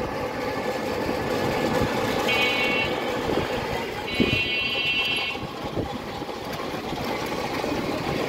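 Street traffic noise heard from a moving vehicle, with a buzzing electric horn sounding twice, a short blast about two seconds in and a longer one about four seconds in.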